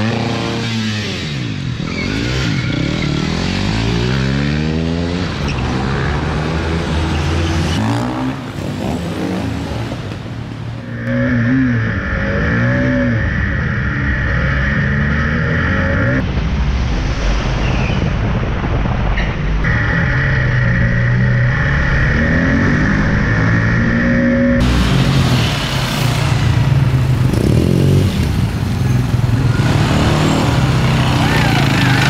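Motorcycle engine revving and accelerating, its pitch rising and falling again and again, heard in several spliced-together passes with abrupt changes at each cut.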